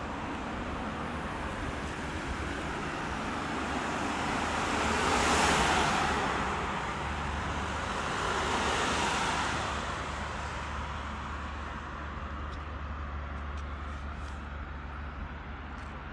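Road traffic: a steady low rumble with two vehicles passing, the louder about five seconds in and a second, smaller one around nine seconds, each rising and fading away.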